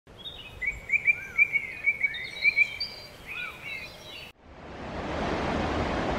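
Birds singing, one repeating a short chirp about four times a second among other higher calls. A little past four seconds in it cuts off sharply and a steady rushing noise swells in its place.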